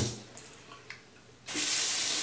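Water running into a bathroom sink: the hiss stops right at the start, then starts again about one and a half seconds in.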